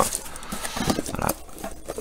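A cardboard box being opened by hand: the taped flaps pulled back, with cardboard and packing tape scraping and rustling.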